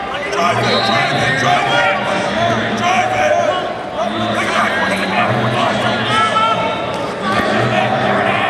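Many voices of spectators and coaches calling out and talking at once during a wrestling bout, echoing in a large indoor hall.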